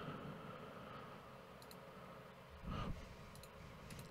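A few faint computer mouse clicks against low room noise.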